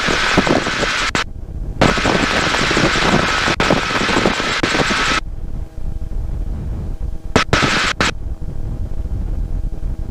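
Bell 47G helicopter in flight heard from the cockpit: a steady drone of piston engine and rotor under a heavy rush of wind noise. The wind hiss cuts out abruptly twice, the second time about five seconds in, leaving the lower engine drone. It comes back in short bursts near the end.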